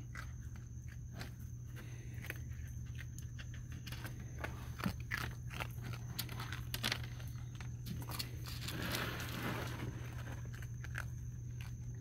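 Raccoons chewing dry pet-food kibble, a run of irregular crisp crunches and clicks, with a scratchier stretch about nine seconds in.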